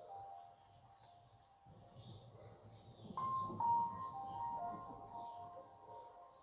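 Soft meditation background music with sustained held notes, swelling louder about three seconds in, with birds chirping throughout.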